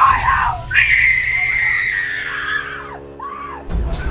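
A person screaming: one long, high scream that drops in pitch as it ends, then a short second cry, over background music.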